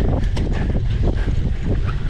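Wind buffets the microphone of a cyclocross bike riding over bumpy grass. There is a constant low rumble and irregular clattering as the bike jolts over the ground.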